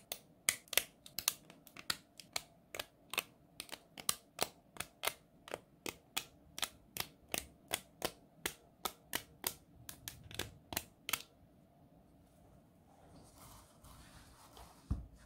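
Akko Lavender Purple mechanical keyboard switches snapping one by one into a 3D printed silk PLA switch plate: a steady run of sharp clicks, about three a second, that stops about eleven seconds in. Faint handling of the plate follows.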